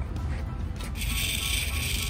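Faint background music. From about a second in, a steady high whir: the small solar-powered motor and plastic gearbox of a toy race car starting up as its solar panel catches the sun.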